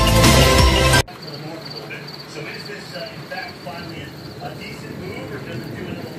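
Background music that cuts off suddenly about a second in, followed by night ambience of crickets chirping steadily in a high, pulsing trill.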